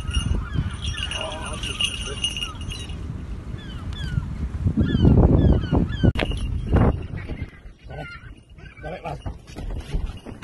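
Short falling bird chirps repeat over a low rumble through the first half. About five to seven seconds in, a louder rumble comes with a couple of sharp knocks.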